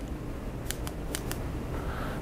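Four short, sharp clicks in quick succession a little under a second in, over a steady low room hum.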